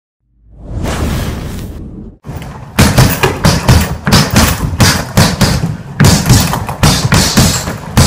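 Boxing gloves punching a hanging heavy bag: a rapid, uneven run of thuds, about three a second, starting about two seconds in, with music. A swelling noise comes before the punches and cuts off suddenly.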